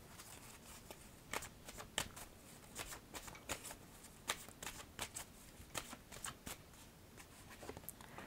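A deck of oracle cards being shuffled by hand: a quiet, irregular string of soft card slaps and clicks.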